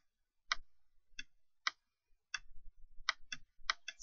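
Laptop touchpad clicking: about eight short, sharp clicks at uneven intervals as strokes are drawn with the touchpad.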